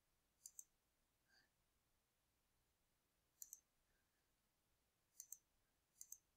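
Faint computer mouse button clicks, in three quick pairs a couple of seconds apart, over near silence.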